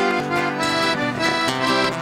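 Accordion playing a passage of traditional music.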